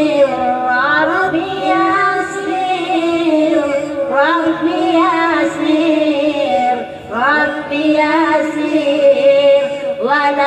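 A woman singing a devotional song into a microphone, amplified, her voice gliding in ornamented runs over steady held tones, with a short pause for breath about seven seconds in.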